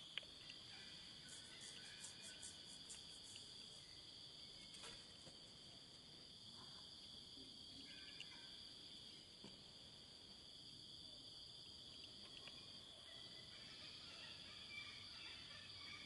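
Faint, steady high-pitched insect chorus, with a brief run of light quick ticks about two seconds in.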